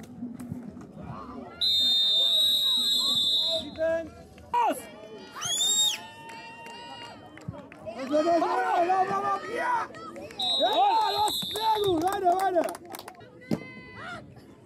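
Referee's whistle blown in two long, steady, high blasts, one of about two seconds near the start and a shorter one past the middle, with players and spectators shouting between and after them.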